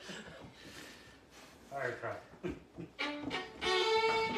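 Two fiddles start a tune about three seconds in, with long bowed notes; before that the room is quiet apart from a short burst of voice about two seconds in.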